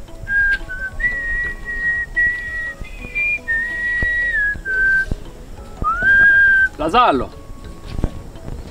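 A person whistling a slow tune in long held notes over faint background music, with a short rising glide near six seconds. About seven seconds in, a brief voice cry sweeps in pitch.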